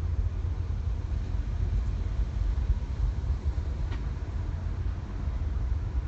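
Steady low rumble of a tour bus driving in highway traffic, its engine and road noise heard from inside the front of the bus. There is one faint click about two-thirds of the way through.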